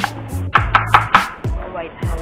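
Background music with a steady beat, over a metal spoon clicking and scraping against a ceramic bowl as chopped chicken is stirred, with a quick run of four sharp clicks around the middle.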